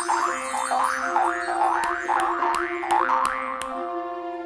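Cartoon boing sound effects, a quick run of springy pitch sweeps about two or three a second, the sound of bouncing on a bed, over instrumental children's music with held notes. A few sharp ticks come in the second half.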